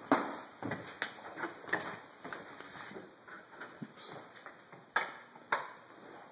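Footsteps on a hardwood floor: scattered knocks and clicks, the two loudest about five seconds in, half a second apart.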